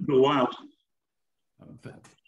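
Speech only: a voice over a video call finishing a sentence, about a second of silence, then another voice starting near the end.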